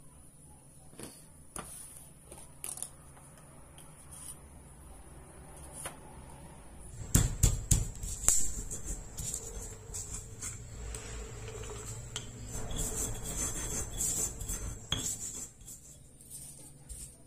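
Pestle crushing unpeeled garlic in a stone mortar for sambal. A few light clinks come first, then several hard knocks about seven seconds in, followed by steady grinding and scraping against the stone.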